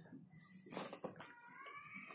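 A cat meowing: a short call just after the start, then a longer call that rises and falls through the second half. Quiet clicks and smacks of eating by hand sound underneath.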